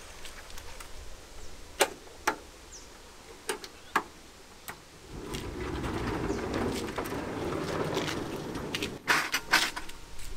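Latches clicking and knocking, then a caravan's stainless-steel pullout kitchen rolling out on its drawer slides for about four seconds, ending in a few clunks as it reaches full extension.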